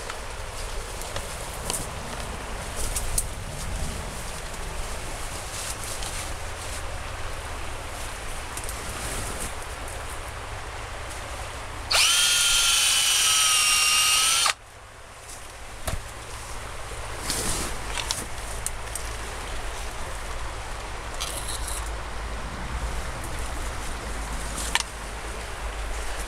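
Power drill boring a hole into a Rhododendron ponticum stem to take a herbicide injection: about halfway through its whine rises as it spins up, runs steady for about two and a half seconds, then cuts off suddenly. A river's steady rush runs underneath, with a few small handling clicks.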